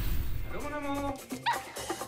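A small dog whining, then giving a short, quick-rising yip about one and a half seconds in.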